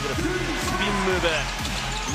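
Basketball dribbled on a hardwood court, a run of bounces heard over arena music.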